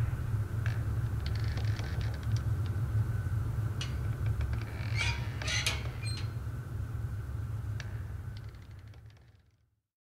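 Dark ambient outro of a metal track: a low rumbling drone with scattered clicks and crackles, a brief crackling flurry about halfway through, fading out to silence near the end.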